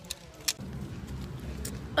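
A single sharp click about half a second in, followed by a steady low outdoor rumble, such as wind on the microphone or distant traffic.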